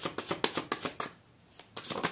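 A deck of tarot cards shuffled by hand: a quick run of card flicks, about eight to ten a second, for the first second or so, a short pause, then the shuffling starting again near the end.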